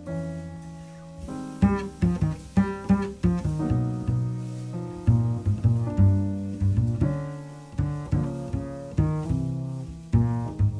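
Jazz double bass played pizzicato: a run of plucked low notes, each starting sharply and fading, in a slow ballad.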